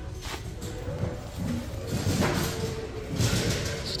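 Background music playing, with a few brief rustles about two and three seconds in.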